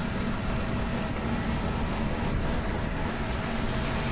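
Engine of a small goods-carrier vehicle running steadily at road speed, with tyre rumble and wind rushing over the microphone.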